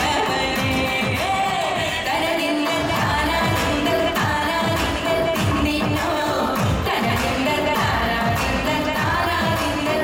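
A woman sings a Malayalam light-music song into a microphone over amplified instrumental accompaniment with a steady beat.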